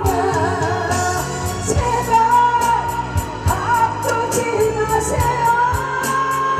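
A singer sings a trot song live into a microphone through a PA, over a backing track with a steady beat. About two seconds in the voice settles into long held notes.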